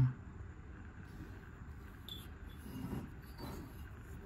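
Low, steady background rumble, with a small click about two seconds in and a faint murmur of voice around three seconds in.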